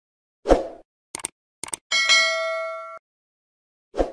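Animated YouTube-style intro sound effects: a short soft hit, two quick double clicks like a mouse button, then a bright bell-like ding that rings for about a second and cuts off suddenly, with another short hit at the end.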